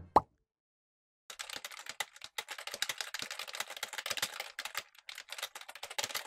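A single short plop with a falling pitch, then about a second of silence, then rapid computer keyboard typing: a dense run of quick key clicks to the end.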